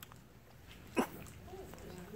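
A lull in a quiet room with faint voices, broken by one short, sharp sound about a second in.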